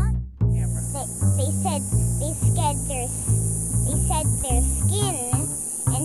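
A chorus of cicadas buzzing as a steady high-pitched hiss, dropping out for a moment right at the start. Background music with low bass notes and a child talking sound over it.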